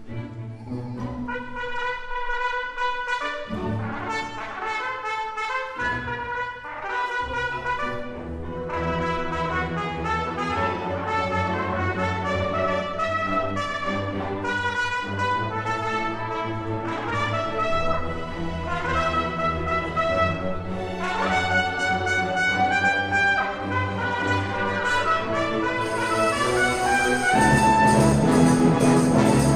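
Trumpet playing a strong, exciting melody with orchestra. The first few seconds come in short phrases; after that the orchestra plays fuller underneath and the music grows louder toward the end.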